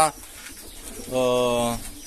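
A man's drawn-out hesitation sound, one steady held vowel lasting under a second, over the faint cooing of pigeons.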